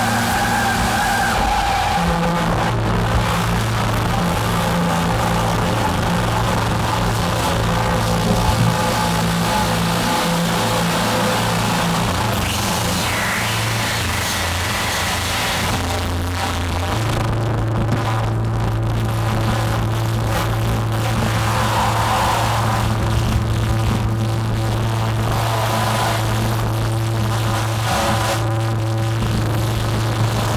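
Live experimental electronic music: sustained low synthesizer drones that step to new pitches a couple of seconds in and again past the middle, under a dense, noisy texture, with an acoustic drum kit playing.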